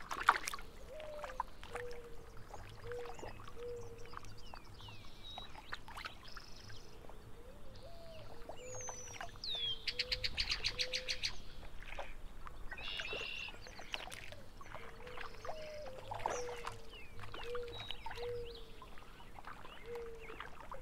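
Mixed birdsong with short calls and slurred whistles throughout, and a rapid trill about ten seconds in. A low short note repeats in runs underneath, over faint water and small splashes.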